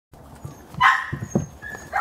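A puppy gives one short, high-pitched bark a little under a second in, followed by a few soft knocks of puppies gnawing raw bones.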